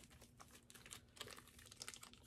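Faint crinkling and small clicks of a thin plastic zip-top bag being handled and opened.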